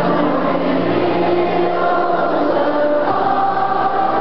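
Many voices singing a song together, choir-like, with long held notes.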